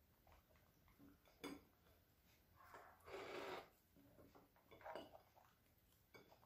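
Mostly near silence, with faint handling of cauliflower on a plate: a light click about one and a half seconds in and a brief rustle around three seconds in.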